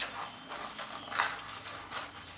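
Rustling and crinkling of a small fabric drawstring bag as it is handled and small items are pushed into it, with a brighter rustle about a second in.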